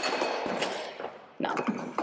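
Close-up handling noise: rustling and a rapid run of sharp knocks and bumps right at the microphone as the camera is handled, with bags and a bottle brushing against it.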